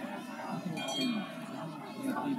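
A hand bell rings briefly about a second in, over the voices of people around the track. It is typical of the last-lap bell rung as runners start the final lap of a 5000 m race.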